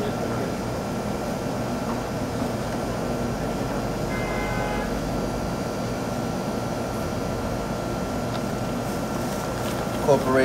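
Steady hum of shop machinery: refrigerated display cases and air conditioning running, with a constant thin whine. A brief electronic beep sounds a little after four seconds in.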